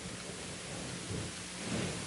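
Steady room tone: an even low hiss with a faint low hum underneath, no distinct events.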